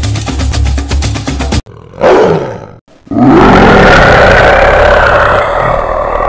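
Rhythmic music with a steady drumbeat that cuts off about one and a half seconds in. It is followed by a tiger-roar sound effect about two seconds in, and then a louder, longer roar that holds until the end.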